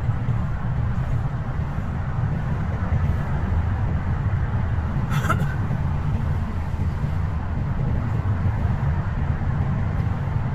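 Steady low rumble of road and engine noise inside a moving car's cabin in slow traffic, with a single short click about halfway through.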